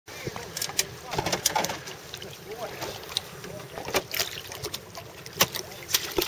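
Small waves slapping against the hulls of jet skis floating at rest, with irregular sharp knocks, loudest about a second in and again near the end, and faint indistinct voices.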